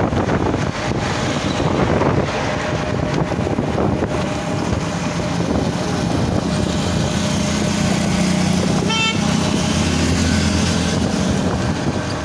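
Steady engine and road noise heard from inside a moving vehicle, with wind buffeting the microphone. A short horn toot sounds about nine seconds in.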